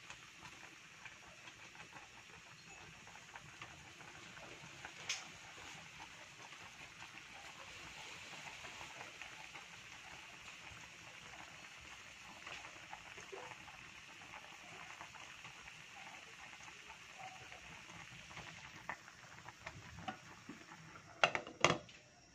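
Soup boiling hard in a pot: a steady, faint bubbling hiss with many small pops. Near the end, a glass pot lid clatters sharply several times as it is set on the pot.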